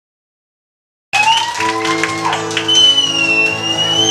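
Silence for about a second, then live sound cuts in abruptly: an acoustic guitar chord ringing, with a high, slowly gliding whistle-like tone over it.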